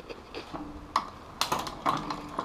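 Bicycle drivetrain turned by hand: the chain running over an FSA Afterburner direct-mount chainring and the rear cassette in the sixth cog, with a faint hum and a few light clicks.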